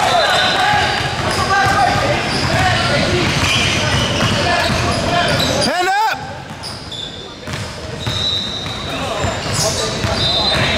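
Basketball game on a hardwood gym floor: the ball bouncing, short sneaker squeaks and players' voices, echoing in a large hall. A sharp pitched squeal rises and falls just before the middle, and the sound gets quieter after it.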